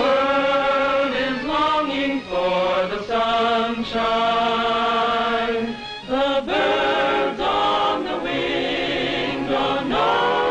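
A choir singing long held phrases with vibrato, pausing briefly between phrases, as part of a 1940s cartoon film score.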